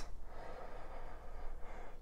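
Faint soft rustling of hands crumbling potting soil in a plastic tub, with breathing close to the microphone.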